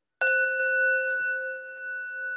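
A singing bowl struck once with a wooden striker, ringing on in a sustained, slightly wavering tone. It is rung to open a moment of silent reflection.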